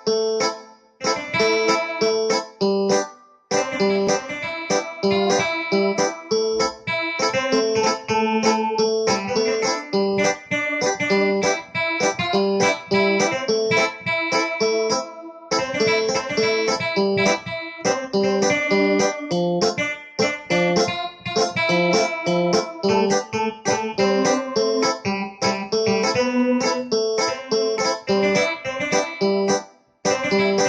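Digital piano playing an improvised reggae melody in short, clipped notes and chords in a steady rhythm, over a pre-recorded bass line.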